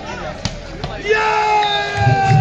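A volleyball struck hard about half a second in, with a lighter hit just after. About a second in, spectators break into loud, long held shouts.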